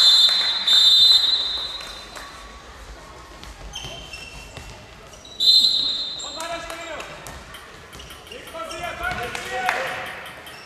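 Handball referee's whistle in a sports hall: two blasts at the start, the second one longer, and a third shorter blast about five and a half seconds in. Between them players shout and a handball bounces on the hall floor.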